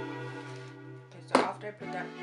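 A single sharp knock of something hard set down on a tabletop, about two-thirds of the way in, over background music.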